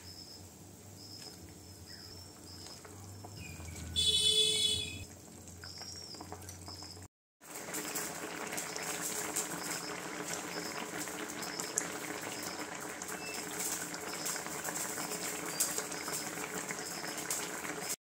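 Fish curry gravy boiling in a pan, a steady bubbling with scattered pops. About four seconds in there is a brief, loud, high-pitched sound lasting about a second, and the sound drops out for a moment just after seven seconds.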